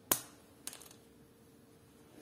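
A sharp click, then a short rattle of lighter clicks about half a second later, over a faint steady hum.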